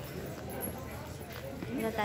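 Footsteps clicking on stone paving, several sharp steps, over the chatter of passers-by.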